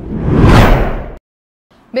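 Whoosh transition sound effect over a news headline wipe: a loud rushing swell that peaks about half a second in and cuts off abruptly just after a second.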